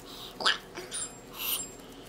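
Plastic tortilla bag crinkling and rustling under hands as a filled tortilla is rolled into a burrito, with one short, loud, falling squeak about half a second in.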